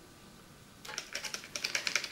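A paintbrush worked in a watercolour paint tray to pick up paint, heard as a quick run of light clicks and taps that starts about a second in.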